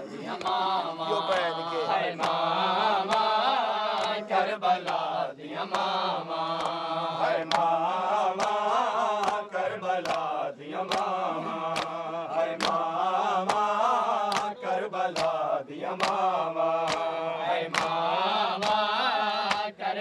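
A Punjabi noha (Muharram lament) chanted by men's voices, a continuous wavering melody, over sharp rhythmic slaps of matam (hand-on-chest beating) about once a second.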